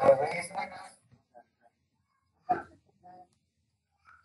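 Brief speech from a person's voice in the first second, then a short second utterance about two and a half seconds in, with quiet between.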